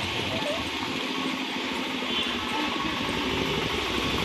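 Steady street traffic noise with motorbike engines running.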